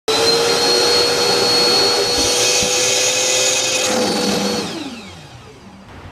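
Shop vacuum running with a steady whine, pulling through a Dust Deputy cyclone hard enough to collapse the plastic bucket beneath it. About four and a half seconds in the motor is switched off and its whine falls in pitch and fades as it spins down.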